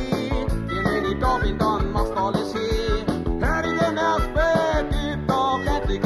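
Bavarian-dialect rock song by a band: drums keep a steady beat under bass, guitar and piano while a man sings in Bavarian dialect.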